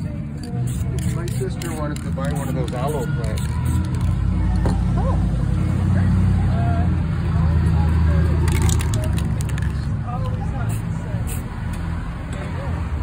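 Aerosol spray paint cans hissing in short bursts, mostly near the end, over background voices and a steady low rumble.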